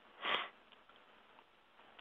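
A man takes one short, quick breath in.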